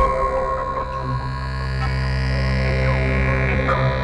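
Experimental electronic synthesizer drone: layered low and mid tones held steady, while a higher tone slowly glides up and down above them.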